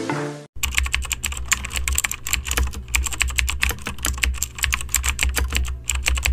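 Rapid computer keyboard typing sound effect, a dense run of key clicks over a low steady hum, starting about half a second in just after music ends and cutting off suddenly at the end.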